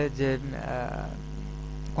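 Steady electrical mains hum on the recording, with a man's voice briefly at the start, trailing off in a drawn-out sound around the first second.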